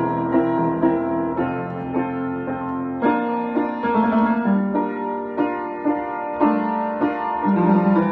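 Upright piano improvisation: held chords in the middle range, with single notes struck over them a few times a second.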